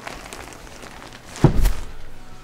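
Lift-up bed platform over an under-bed storage compartment being lowered on its gas struts and shutting with one heavy thud about one and a half seconds in, after some light rustling of the bedding.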